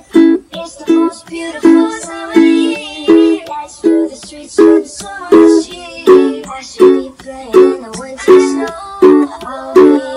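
Ukulele strummed in a steady rhythm through the chords A, E, F#m and D, with an accented strum about every three-quarters of a second and lighter strokes between.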